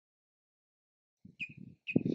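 Silence, then about a second in, wind starts buffeting the microphone in short, irregular rumbling gusts.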